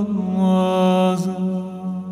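A singer holds one long, steady note at the end of a sung line in an acoustic song. The note fades a little after a second in, leaving a low tone sounding softly beneath.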